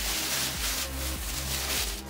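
Plastic bag rustling and crinkling as it is pulled off a 3D printer, over steady background music.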